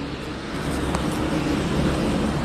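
Steady rumble of road traffic and vehicles in an urban driveway, growing slightly louder after about half a second, with a faint click about a second in.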